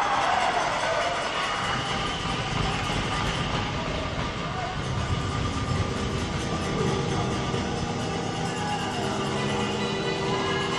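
Arena goal horn sounding continuously after a goal, with goal music over it.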